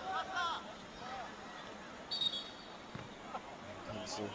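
Faint voices over low background ambience, with a brief high steady tone about two seconds in.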